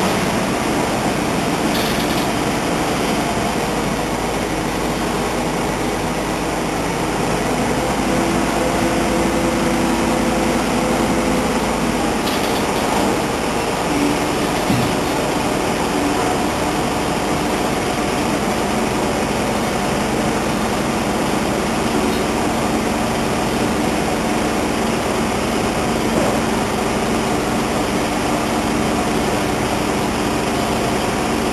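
Mobile truck crane's diesel engine running steadily through a heavy lift, its tone shifting about midway as the engine works the hydraulics.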